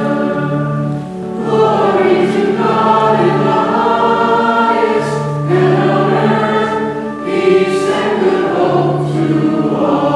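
A group of voices singing a liturgical hymn together in held, sustained notes, with brief breaks between phrases about a second in and again around seven seconds.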